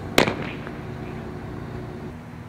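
A pitched softball, a dropball, smacks into the catcher's mitt once, a sharp loud pop about a fifth of a second in, over a steady low background hum.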